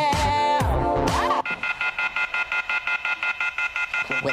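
A hip-hop dance track plays, then cuts off about a second and a half in, giving way to an electronic telephone ring: a few high tones trilling on and off rapidly and evenly, part of the dance mix.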